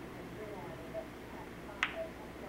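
Pool balls colliding: one sharp, short click near the end as the rolling cue ball strikes an object ball.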